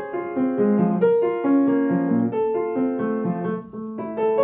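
Yamaha upright piano played by hand: a classical piece at a moderate pace, single notes and chords sounding one after another with earlier notes ringing on under the new ones.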